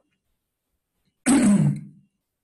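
A man clearing his throat once, a short rough burst that ends in a low, falling voiced tone, about a second and a quarter in after a silence.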